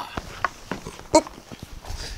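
Shoes stepping and shuffling on a wooden floor: a scatter of soft, separate footfalls as two people move in close. A short voiced sound comes about a second in.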